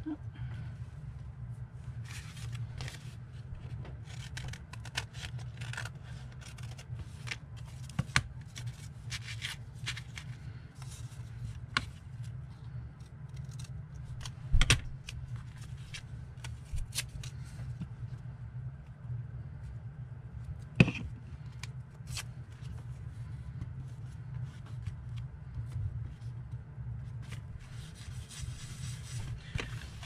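Paper being handled on a desk: sheets rustling and sliding under the hands as glued collage paper is pressed down, with scattered light taps and clicks and two sharper knocks about halfway and two-thirds of the way through, over a steady low hum.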